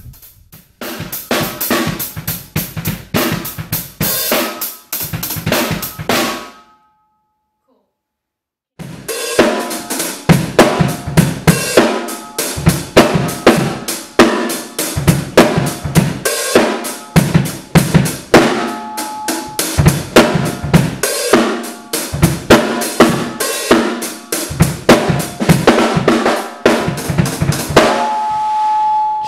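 Drum kit of bass drum, snare and hi-hat playing a busy funk groove, the kick drum leading the pattern under steady hi-hat strokes. The playing breaks off in silence for about two seconds around seven seconds in, then the groove starts again.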